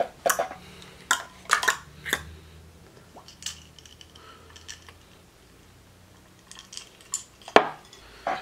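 Light clicks and clinks of hard objects being handled and set down: makeup containers and a drinking cup. A few come in the first two seconds, it goes quiet in the middle, and a sharper click comes near the end.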